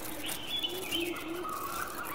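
Birds: a dove cooing in short, repeated low notes, with smaller birds chirping higher up.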